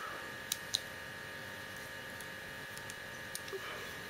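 Two small sharp clicks of hard plastic toy parts, then a few softer ticks, as a backpack is pressed onto a small plastic action figure, over a steady faint electrical hum with a thin high whine.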